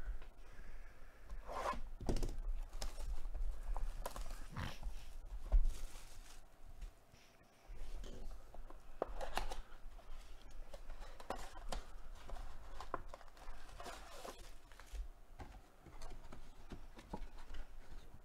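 A cardboard trading-card box being handled and opened by hand: irregular rustling, crinkling and tearing of the wrapping and cardboard, foil card packs being pulled out and handled, and a few knocks as things are set down.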